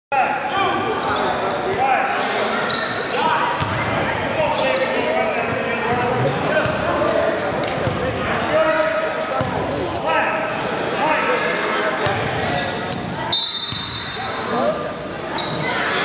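Indoor basketball game: a ball bouncing on a hardwood gym floor among players' indistinct talk and shouts, echoing in a large hall. There is a single loud, sharp knock about 13 seconds in.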